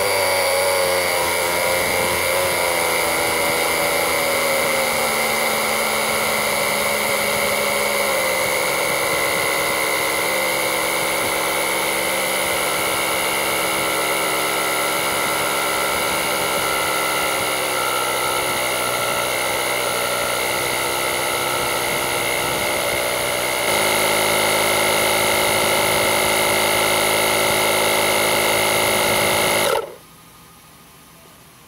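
Coido 12-volt portable air compressor running steadily while inflating a car tyre, its pressure climbing from about 21 to 41 psi. Its pitch sags slightly as the pressure builds, and it grows a little louder a few seconds before it cuts off suddenly near the end.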